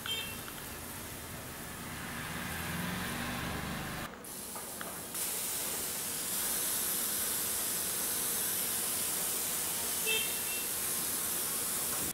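Hand-pump pressure sprayer misting diluted liquid fertilizer onto plants: a steady hiss that dips briefly about four seconds in, then resumes brighter and higher-pitched.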